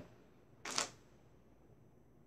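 A short intake of breath through the mouth, a brief hiss about two-thirds of a second in, as a reader pauses between verses.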